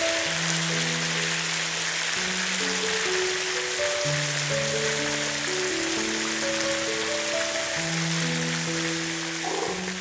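Chicken drumsticks in tomato sauce sizzling in a hot pan, a steady hiss that stops suddenly just before the end, under background music with a slow melody of held notes.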